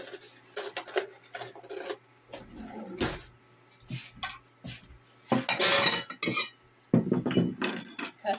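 Metal forks and plates clinking and clattering as they are handled, in a run of irregular knocks that is busiest in the last three seconds.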